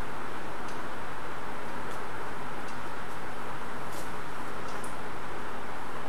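Steady background hiss with a few faint, sharp ticks scattered through it, from a marker touching the whiteboard.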